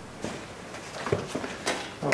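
Handling noise: about five light clicks and knocks from a plastic radiator grille being picked up and carried, over faint room tone.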